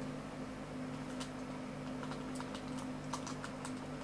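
Scattered light clicks from a computer keyboard and mouse, a few at a time, clustered in the second half, over a steady low hum.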